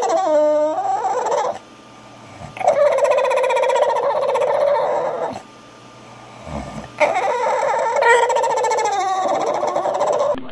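A bulldog vocalizing in long, wavering whine-howls, three of them with short pauses between.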